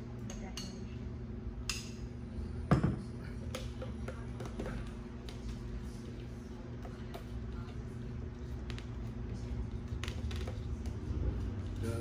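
Scattered light clicks and one sharper knock about three seconds in, from a long spoon and plastic cups being handled while a thick syrup coating is poured and swirled round the inside of a cup, over a steady low hum.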